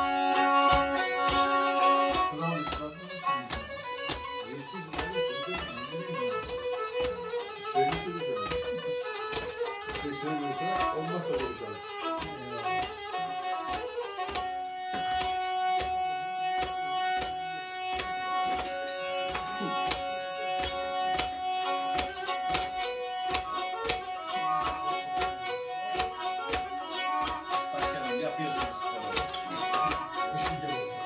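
Black Sea kemençe, a small three-string bowed fiddle, playing a fast folk tune. From about halfway through, steady held notes sound beneath the melody.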